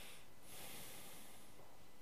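Faint breathing through the nose of a man, picked up close by a headset microphone: a short breath right at the start, then a longer one from about half a second in, lasting around a second.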